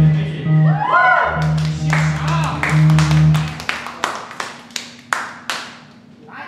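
Small rock band ending a song: electric bass holding low notes under bending electric guitar lines, the music stopping a little under four seconds in. Sparse clapping from a small audience follows as the song ends.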